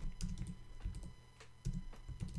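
Computer keyboard typing: a few short runs of keystrokes with brief pauses between them.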